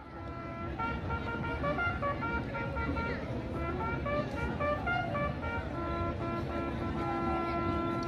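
Faint horn-like notes playing a slow tune, with a longer held note near the end, over a low murmur of voices.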